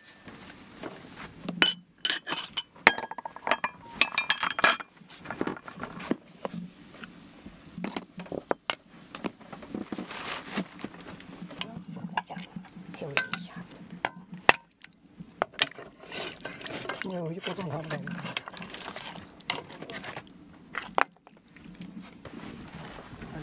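A metal ladle and dishes clinking and knocking as stewed meat is scooped from a metal pot into bowls. There is a rapid cluster of ringing clinks a few seconds in, then scattered knocks and scrapes.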